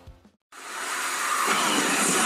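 A moment of silence, then a steady, noisy roar fades in about half a second in and grows fuller and deeper about halfway through.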